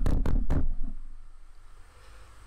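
Microphone handling noise on a played-back recording: several sharp knocks and low rumbles in the first half-second as the mic is shifted around, then dying away to the steady background noise of a room fan.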